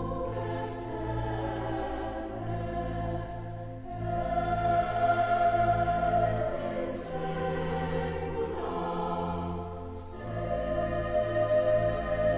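Choir singing held chords in phrases, swelling louder about four seconds in and again near the end.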